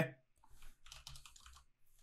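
Faint typing on a computer keyboard: a short run of keystrokes starting about half a second in.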